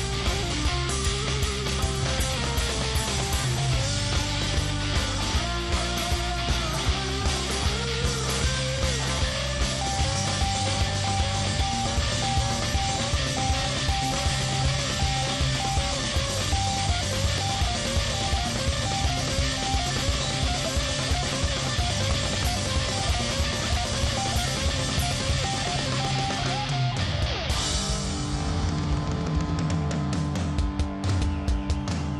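Hard-rock band playing live: distorted electric guitars, bass and a full drum kit, with a repeating guitar riff through the middle. About three seconds before the end comes a cymbal crash, and the guitars change to long held notes.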